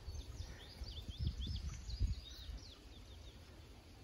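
A small bird singing a quick run of high chirps for the first few seconds, over a low outdoor rumble with a couple of soft low thumps, the strongest about two seconds in.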